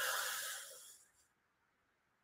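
A man's audible in-breath, an airy hiss that fades out about a second in.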